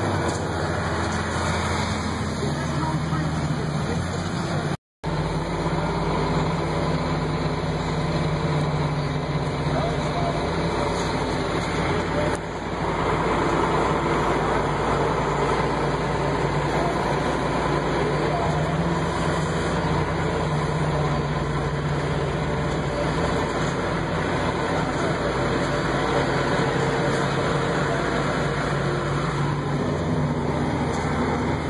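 John Deere tractor's diesel engine running steadily, heard from inside the cab while driving. The sound cuts out completely for a moment about five seconds in.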